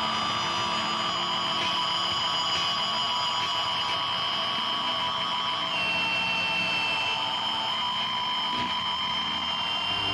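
Drone music from heavily processed electric guitars: a steady wall of noise with sustained high-pitched tones and little bass. One of the high tones drops slightly in pitch about six seconds in.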